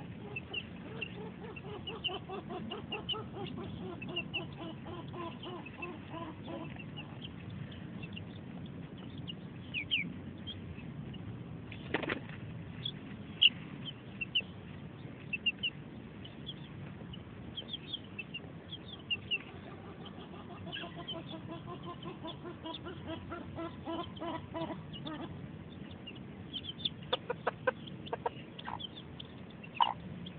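Dutch bantam hen giving runs of low, quick clucks, near the start and again after about twenty seconds, while chicks peep with short high cheeps throughout. A single sharp click about twelve seconds in, and a few more near the end.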